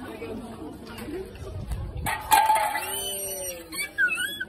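Tin cans in a can-knockdown game toppled by a thrown beanbag: a short clatter about halfway through, followed at once by a loud, high-pitched excited shout that falls in pitch, over people chattering.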